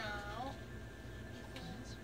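A short high-pitched call, falling in pitch over the first half second, over the steady low rumble inside a moving train carriage.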